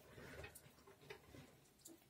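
Near silence with a few faint, scattered clicks: a bearded dragon chewing a cockroach.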